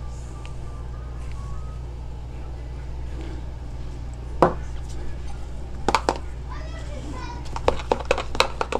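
A few sharp clicks and knocks as a glass bowl and a small scale are handled and set down on the bench, the first about four and a half seconds in and more near the end, over a steady low hum.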